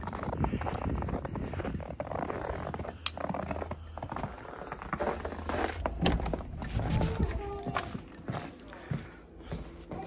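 Footsteps crunching through deep snow, then a few clicks and knocks as a house door is opened.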